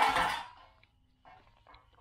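A man's cough trailing off in the first half-second, then near silence.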